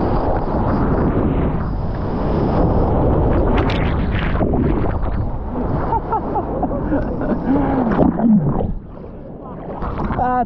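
Loud rush of water and spray over a board-mounted action camera as a surfer rides a small breaking wave, with wind on the microphone. From about six to eight seconds in, a voice lets out several rising-and-falling hoots, and the rush drops away suddenly near the end.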